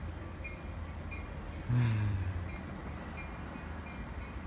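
Distant approaching commuter train, a steady low rumble, with a faint high ding repeating about every half second. About two seconds in, a short low sound falling in pitch is the loudest moment.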